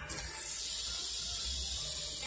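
Fidget spinner spinning on its bearing on a wooden tabletop: a steady high-pitched whir that starts right after it is flicked and holds even.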